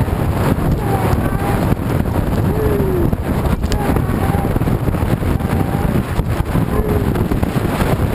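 Chuckwagon racing at speed, heard from on the wagon: a steady, dense rumble of the galloping horse team and the wagon's wheels on the dirt track, mixed with heavy wind buffeting on the microphone. A few faint, short gliding cries rise and fall now and then.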